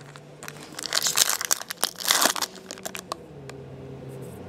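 Foil trading-card pack crinkled and torn open by hand: crackling, rustling foil with sharp little snaps, loudest from about half a second in and again around two seconds in.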